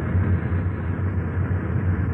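Steady low rumble of a tour bus's engine running, with hiss, heard on a muffled, low-fidelity tape recording.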